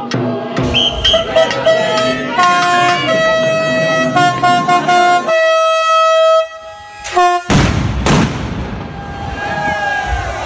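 A horn sounding a series of long held notes at a few different pitches for about six seconds, then stopping abruptly. A loud rushing whoosh follows near the end.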